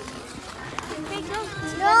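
Speech only: faint background voices for the first part, then a child calling a high-pitched "no" near the end.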